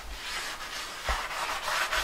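A sponge scrubbing the inside of a frying pan at the sink: a steady rubbing scrape, with a single knock about a second in.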